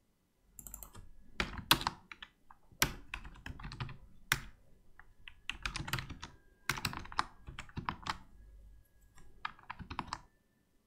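Typing on a computer keyboard: uneven runs of key clicks in quick clusters, with brief pauses between them, starting about half a second in.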